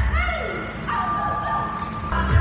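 A high-pitched, puppy-like whimper: a short rising-and-falling yelp near the start, then a held whine lasting about a second.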